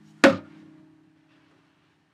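Acoustic guitar hit once: a sharp knock and strum, then its strings ring on and die away within about a second.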